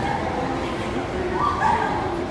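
Kintetsu electric train approaching an underground platform, its low rumble under people's voices. A short high-pitched call stands out about one and a half seconds in.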